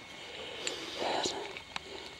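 Faint, steady sound of water running down inside a collapsed pothole on the moor, with a couple of light clicks.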